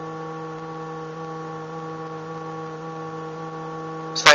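Steady, unwavering low synthesizer tone with a set of overtones: a sine-wave oscillator heard through a homemade four-pole vactrol low-pass voltage-controlled filter, held at one pitch and one cutoff setting.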